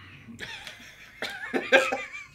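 Men laughing: breathy chuckles that build into louder bursts of laughter near the end.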